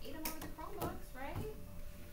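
Indistinct talking that is too unclear to make out as words, with a few sharp clicks mixed in.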